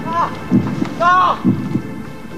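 A low double thump, like a heartbeat, repeating about once a second. Over it come short pitched sounds that rise and fall in an arch.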